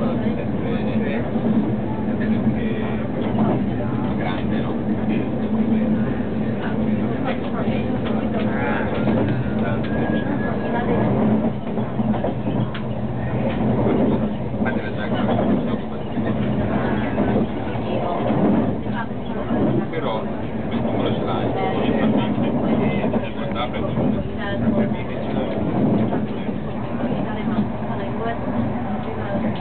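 Train running noise heard inside a passenger carriage, a steady low hum under the wheels' noise, with indistinct passenger chatter.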